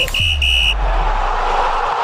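Electronic outro sting: two short, high beeps in quick succession, then a low bass note under a steady whooshing hiss.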